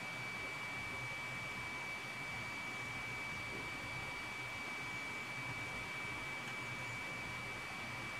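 Low, steady hiss of room tone with a thin, constant high-pitched whine running through it. No distinct sound stands out.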